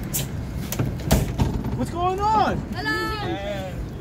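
Two long, drawn-out shouted calls from young men on the platform, the first rising and falling about two seconds in, the second held and then falling away. Before them come a few sharp knocks, and a low rumble runs underneath.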